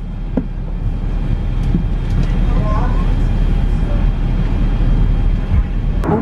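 Steady low rumble of an airliner cabin in flight, with a faint voice about halfway through.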